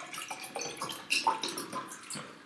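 Water poured from a plastic bottle into a drinking glass, in a run of irregular splashes.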